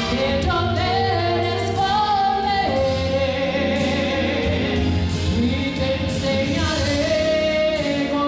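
A woman singing a gospel song solo into a handheld microphone over backing music, holding long notes with a slight waver.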